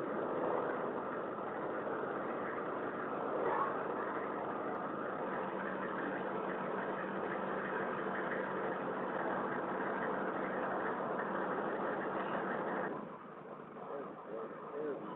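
An engine running steadily with a constant low hum. The sound drops away sharply about a second before the end.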